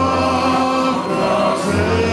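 Male folk vocal ensemble singing long held notes in close harmony, the chord shifting near the end, with acoustic string accompaniment from guitars and a double bass.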